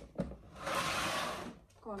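Two light knocks as a hard-shell suitcase is handled, followed by about a second of rustling.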